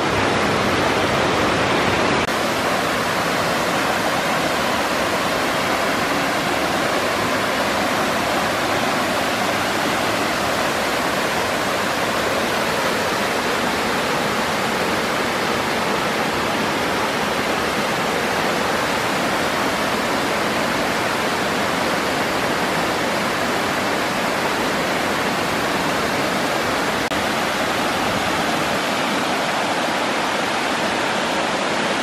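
Waterfall and its stream cascading over rocks: a steady rush of falling water.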